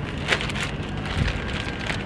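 Clear plastic bags holding resistance bands crinkling and rustling as they are handled, with irregular crackles.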